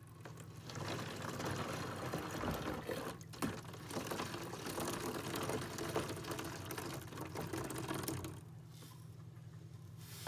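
Liquid pouring into a plastic jug in a steel sink, a steady splashing run that stops about eight seconds in.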